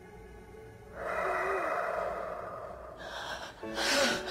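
A long, gasping breath starts suddenly about a second in and fades over two seconds, the first breath of a man coming back after resuscitation. A second sharp gasp comes near the end, over a soft film score.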